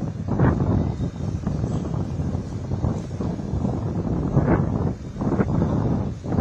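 Wind buffeting an outdoor microphone: a loud, gusty low rumble that surges and drops every second or so.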